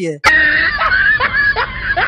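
A loud, high-pitched wailing cry with a wavering pitch that swoops down several times, starting just after a word ends.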